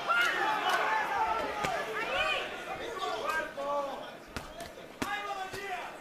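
Sharp smacks of boxing-glove punches landing, several times over a few seconds, under men's voices talking and shouting in the arena.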